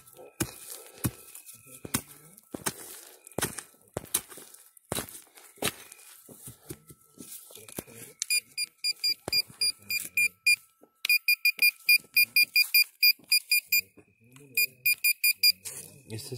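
Knocks and scrapes of a digging tool in soil, then a handheld metal-detecting pinpointer beeping rapidly (about five high beeps a second) in three bursts as it is passed over the target. The beeping signals a metal target in the dug soil, which turns out to be a piece of aluminium.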